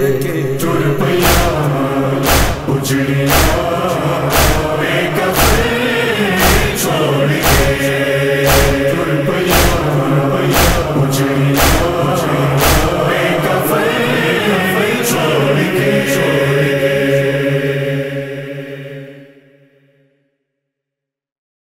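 A nauha, a Shia lament, sung by male voices with a chorus over a steady heavy beat about once a second. The beat stops about two-thirds of the way through, and the held chant fades out at the end.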